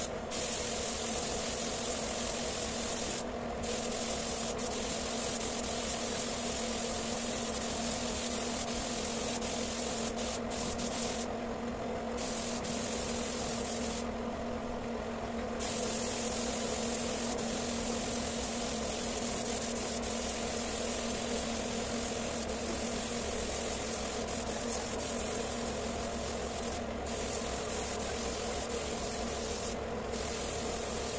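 Compressed-air spray gun hissing steadily as it sprays a finish onto wood, over a steady hum. The hiss cuts off briefly a few times.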